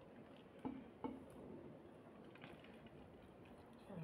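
Quiet chewing of food, with two short wet mouth clicks a little under a second apart, about a second in.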